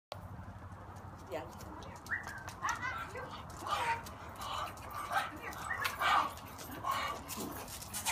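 A dog whimpering and giving short yips, mixed with people's voices.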